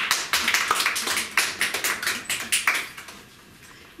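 A small audience clapping, a dense patter of hand claps that dies away about three seconds in.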